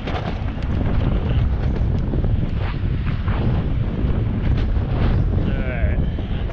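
Heavy wind buffeting on the microphone of a moving rider, a continuous low rumble. Near the end a brief wavering, higher-pitched sound rises over it.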